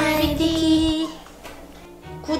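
A woman singing a short playful phrase in a high, childlike voice, holding the last note for about a second over light background music; both stop about a second in.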